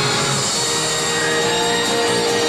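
Show music with long held notes, played over a stadium's sound system.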